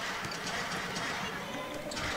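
Basketball court sounds: players' footsteps and scattered light knocks on the hardwood over a low arena crowd murmur.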